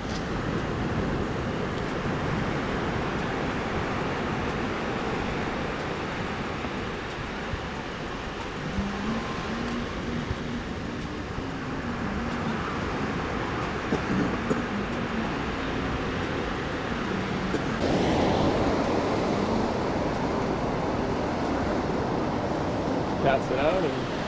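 Steady ocean surf and wind noise on the beach, growing louder about three-quarters of the way through, with faint voices in the background in the middle.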